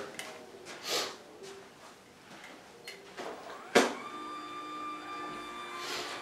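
Permobil F5 VS power wheelchair's standing actuator: a click just before four seconds in, then its electric motor running with a steady whine as the chair starts raising the seat toward standing.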